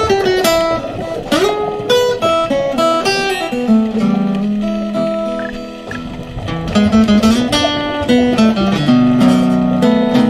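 Background music: a guitar playing an instrumental break between sung verses, a steady run of picked single notes and chords.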